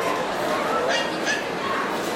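A dog giving two short yaps about a second in, over steady crowd chatter.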